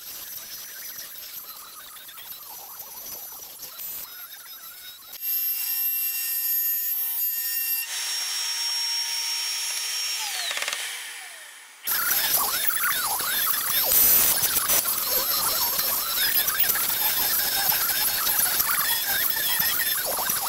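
CNC router spindle running and cutting letters out of MDF, a steady high whine over the cutting noise. About ten seconds in the spindle winds down with a falling pitch, then the cutting starts again, louder.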